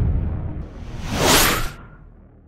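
Logo-sting sound effect: a low boom dies away, then a whoosh swells up, peaks and cuts off sharply about one and three-quarter seconds in, leaving a short fading tail.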